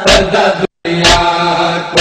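A male voice chanting an Urdu noha (Shia lament) in a held, slow melody over a steady thump about once a second, the rhythm of matam chest-beating. The audio cuts out for a split second just before the halfway point.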